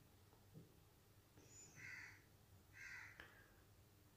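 Near silence, with two faint, short bird calls about a second apart.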